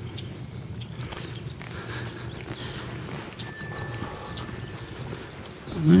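A bird repeating a short, high chirp about once a second over steady outdoor background noise.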